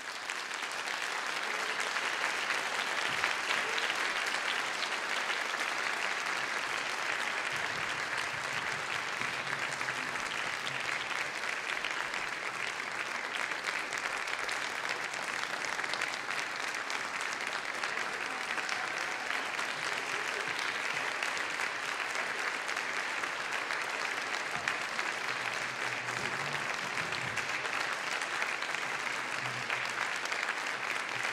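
Audience applause in a concert hall, rising within the first second or two and then holding steady.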